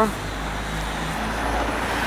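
Road traffic: a car driving past on the street, a steady rush of tyre and engine noise with a low rumble that grows gradually louder.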